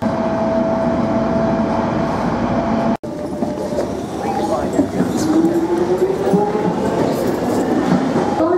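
Passenger train running, with a steady rumble and a held hum. After a break, a London Underground train, its motor whine rising steadily in pitch over the last few seconds.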